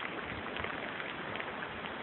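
Steady, faint background hiss of outdoor noise on a phone microphone, with a few faint low thumps and no distinct event.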